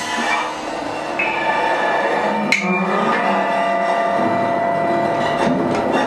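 Free-improvised ensemble music: a dense, clattering percussive texture with high and mid held tones coming in, and one sharp strike about two and a half seconds in.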